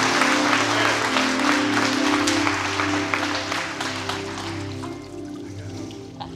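Congregation applauding over soft background music of long held chords; the applause dies away over the first four or five seconds, leaving the music.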